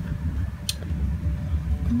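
Steady low background rumble, with one short sharp click about two-thirds of a second in.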